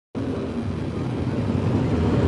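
Dirt super late model race car's V8 engine running steadily at low revs, growing slightly louder as the car approaches.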